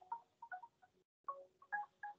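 Faint background music of short, plinking notes at varying pitches, a few each second, with a brief dropout about a second in.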